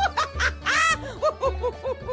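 A woman laughing, a quick run of short ha-ha syllables with a shrill squeal in the middle, over background music.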